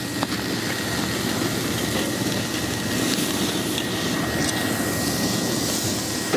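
Skirt steak searing on the grate of a charcoal kettle grill over hot coals: a steady sizzle and hiss as its rendering fat drips into the fire and flares up.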